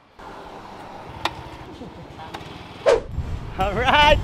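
Low, steady rumble of street traffic with a single sharp click about a second in, then a man laughing and calling out loudly near the end.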